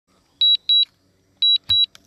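High electronic beeps in pairs: two short double beeps about a second apart, with a brief knock just after the second pair.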